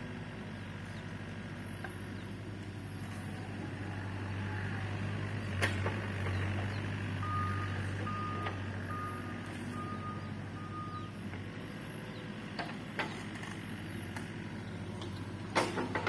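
A mini excavator's diesel engine running steadily, with five short, evenly spaced beeps from its travel alarm about halfway through as the machine moves. A few sharp knocks are heard along with it.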